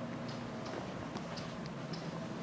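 Steady low hum with a few faint, irregular light ticks.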